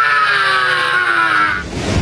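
A man's long drawn-out yell, pitch sliding slowly downward, breaking off about one and a half seconds in.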